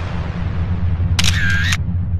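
Outro sound effect: a deep rumbling whoosh under a camera shutter sound a little over a second in, a bright click and its release about half a second apart.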